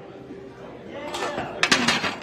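A man straining through the last rep of a barbell bench press, with a forceful breathy exhale and strained vocal effort building from about a second in, and a few sharp knocks near the end.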